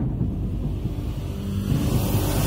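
Low rumbling sound effect of a channel logo intro, with a hiss swelling into a rising whoosh near the end as the intro music comes in.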